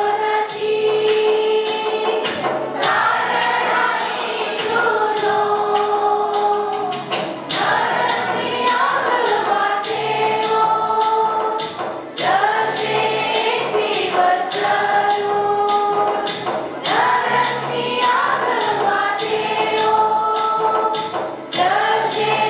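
A devotional song sung by a group of voices over instrumental backing with a steady beat, the melody moving in long held phrases.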